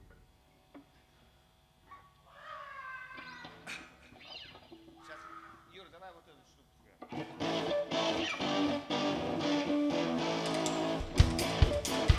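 Live rock band starting a song: electric guitar and bass guitar come in loudly about seven seconds in after a near-silent gap, and the drum kit joins near the end with heavy kick drum hits.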